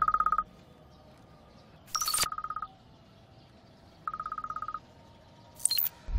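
Mobile phone ringing with a rapid trilling electronic ring, three short rings about two seconds apart, with a sharp click at the second ring and a couple more near the end.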